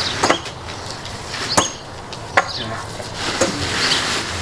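Four sharp knocks of a hand tool striking, irregularly spaced about a second apart, from work levelling the ground for pavers.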